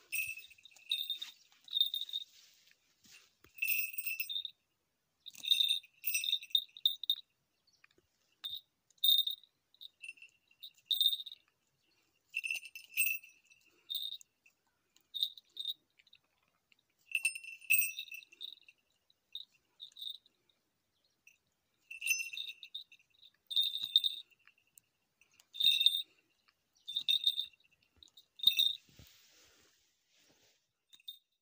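Small falconry bell on a goshawk jingling in short, irregular bursts every second or two as the hawk plucks and tears at its kill.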